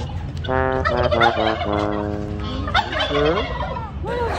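Domestic tom turkey gobbling and calling: a run of short pitched notes, then one long held note, with bending calls around it.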